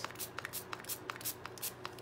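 A paper towel crinkling and rustling as a hand presses and handles it on a metal tray: a run of small, irregular crackles.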